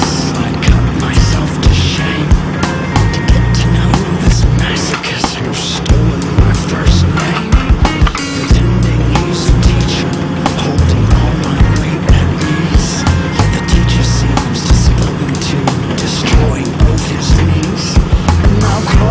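Loud music with a heavy, driving beat and no singing.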